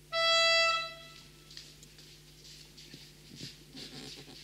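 A single steady note blown on a small toy trumpet, held for about a second and then cut off.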